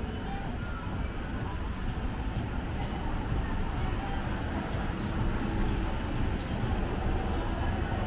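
Outdoor street ambience: a steady low rumble with faint voices in the background.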